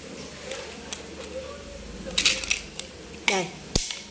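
Light clicks and clatter of a telescopic carbon sea-fishing rod's metal line guides and sections being handled. There is a quick cluster of clicks about two seconds in and one sharp click near the end.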